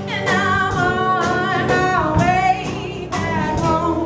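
Live country-style band playing a song: a voice singing over acoustic guitar, electric bass and a drum kit keeping a steady beat of about two strokes a second.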